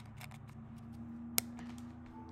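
A few faint clicks and taps with one sharp, loud click about a second and a half in, over a faint steady low hum.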